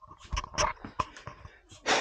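Handheld camera handling noise: irregular rustles and clicks, with a few short breathy bursts, as the camera is moved about.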